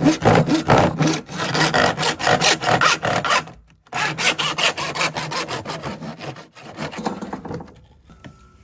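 A Lenox 18-inch PVC/ABS hand saw cutting through a moulded plastic part with quick back-and-forth rasping strokes. The strokes stop briefly a little before the middle, then start again and grow weaker near the end as the cut goes through.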